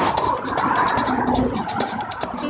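Road traffic noise, with rustling and clicking from the recording phone being handled.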